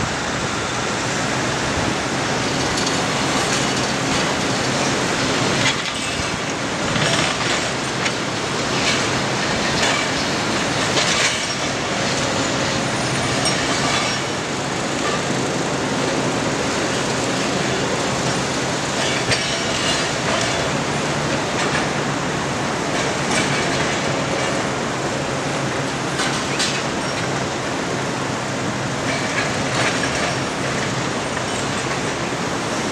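Demolition machinery working: a steady diesel engine hum under repeated metallic clanking, rattling and squealing of steel and rubble being moved.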